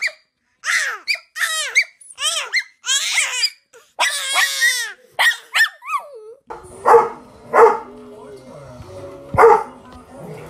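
A baby squealing and babbling in short high-pitched bursts. Then a dog barks three times: two barks close together and a third about two seconds later.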